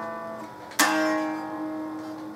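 Electric guitar played slowly: a note ringing out and fading, then a fresh pick attack a little under a second in that is left to ring and die away, part of a slowed-down ending passage.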